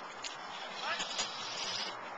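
A person's voice calling out briefly and faintly about a second in, over a steady background hiss.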